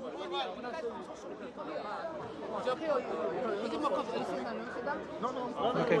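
Speech only: several men talking at once in low, overlapping chatter, with one voice saying "okay" about halfway through.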